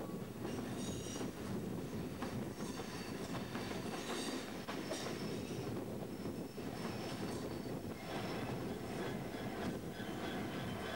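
Passenger coaches of a train rolling past at close range: a steady rumble of wheels on rail, with short high wheel squeals every second or two. Near the end the rear Freightliner Class 66 diesel locomotive comes through.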